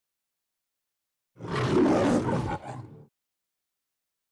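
A lion's roar: one rough roar starting about one and a half seconds in, lasting about a second, then trailing off briefly.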